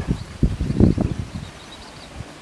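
Wind buffeting the microphone in irregular gusts, loudest about half a second to a second in, with faint bird chirps.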